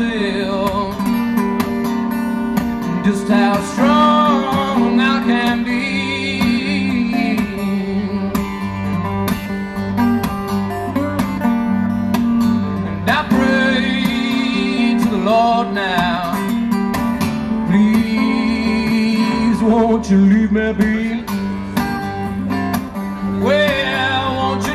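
Solo steel-string acoustic guitar played steadily with a man singing over it, a live vocal through a stage microphone. Deep bass notes join the guitar about six seconds in.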